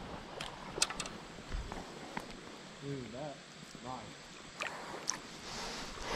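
Shallow river water lapping and sloshing while a smallmouth bass is handled in and lifted out of a landing net, with a few sharp clicks and taps from the handling. A faint short voice sound comes about halfway through.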